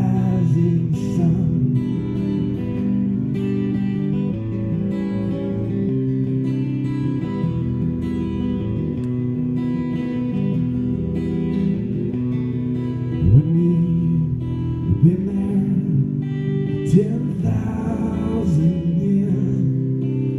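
Acoustic guitar played live, chords ringing steadily, with a voice coming in briefly now and then.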